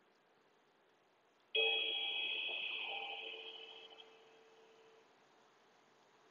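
A meditation timer's chime rings once, starting suddenly about a second and a half in and fading over about three seconds. It marks the switch between a 10-second inhale and a 10-second exhale.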